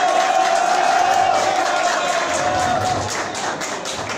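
Audience in a hall cheering and clapping, with one long held high note over the crowd for about three seconds before it fades.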